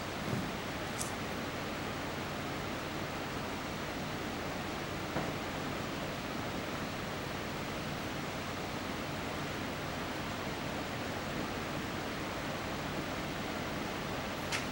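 Steady hiss of room tone in a hushed hall during a minute's silence, with a couple of faint ticks about one and five seconds in.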